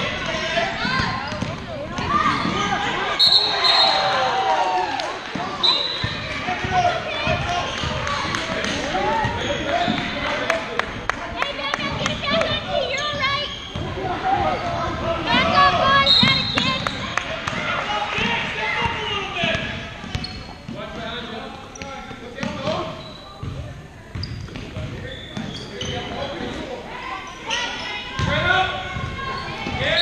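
Basketball bouncing and being dribbled on a hardwood gym floor, with overlapping shouts and chatter from players and spectators in a large gym.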